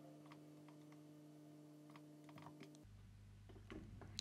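Near silence with faint, scattered clicks of a computer keyboard and mouse, over a faint low hum that stops about three seconds in.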